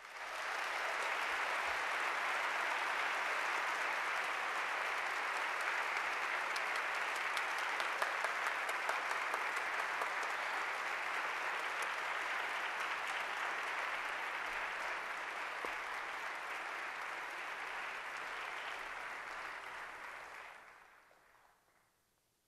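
Audience applauding: a steady wash of many hands clapping that starts abruptly and dies away near the end.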